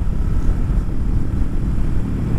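Steady low rumble of a 2023 Kawasaki Versys 650 motorcycle being ridden, with wind buffeting the microphone.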